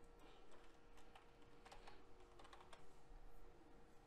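Near silence: faint room tone with a steady hum and a short run of faint computer keyboard clicks, from about a second to three seconds in.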